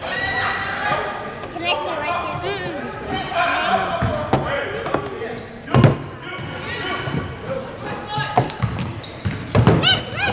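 A basketball being dribbled on a hardwood gym floor, with repeated sharp bounces and one louder thump about six seconds in, over voices of spectators and players calling out, echoing in the gym.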